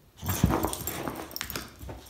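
A boxer dog making sounds as it shies from a stick vacuum's wand, starting suddenly just after the start, with a few sharp clicks later on.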